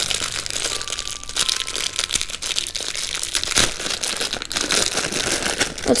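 Thin clear plastic bags crinkling and rustling with many small crackles as hands handle them and pull rubber figure erasers out of them.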